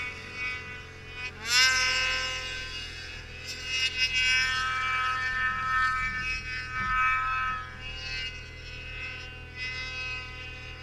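2020 Ski-Doo Summit X snowmobile's two-stroke engine pulling hard at high revs in deep powder, its whine climbing sharply about a second and a half in and then holding high with small rises and dips.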